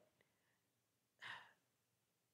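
Near silence, then a little over a second in a single short breath, a sigh-like rush of air, taken close to a handheld microphone.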